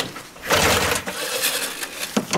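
Rustling and scraping handling noise, a dense hiss-like scuffle with no engine or voice in it. It dips briefly at the start and comes back steady about half a second in.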